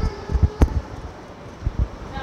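Walking and handling noise on a handheld phone microphone: a dull rumble with low, irregular thumps, one sharp knock a little over half a second in and two more thumps near the end.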